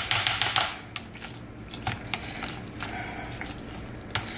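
A plastic masher working mashed avocado in a bowl: wet squishing with quick clicks and taps of the masher against the bowl. It is busiest in the first second and lighter after.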